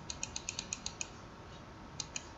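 Computer mouse button clicked rapidly, about seven clicks a second, stopping about a second in, as strokes are undone one after another in a drawing program; a single further click near the end.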